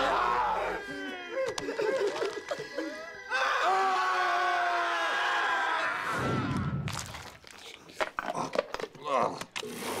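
Several men screaming and yelling in horror, their wordless voices overlapping, for about the first seven seconds. Then it goes quieter, with scattered knocks and clicks.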